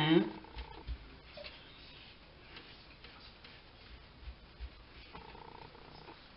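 Quiet, soft handling sounds of hands pressing and patting quark dough flat on a floured kitchen worktop, with a few faint low thumps.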